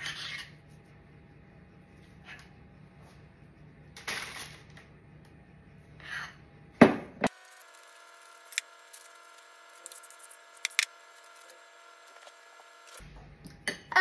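A metal spoon scraping a ceramic bowl and dropping thick batter onto baking paper in a tray: a few short scrapes, with the loudest, a sharp knock, about seven seconds in. After that only a few light ticks over a faint steady tone.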